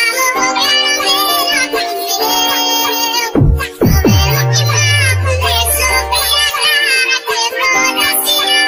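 Sped-up, high-pitched chipmunk-style vocals sing a Portuguese-language piseiro song over an electronic backing. About three seconds in, a deep bass sweeps sharply downward, then a long bass note slides slowly lower.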